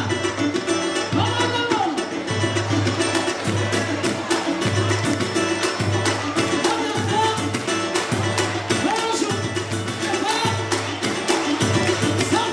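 Live samba band playing: hand drums and other percussion keep a busy beat over a low pulse that repeats about once a second, under a melody line.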